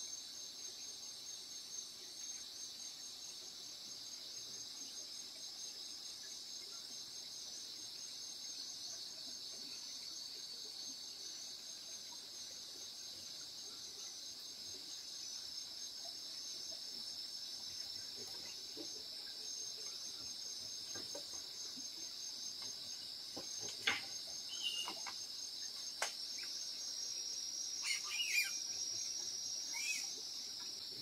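A steady chorus of night crickets, a continuous high trill. A few sharp clicks or knocks come near the end.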